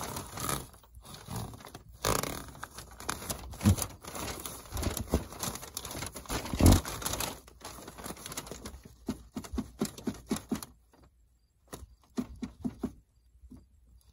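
Plastic underbelly wrap rustling and crinkling, with scraping and irregular knocks, as a yellow-coated gas line is worked up through it by hand; the handling noise thins to a few faint clicks after about eleven seconds.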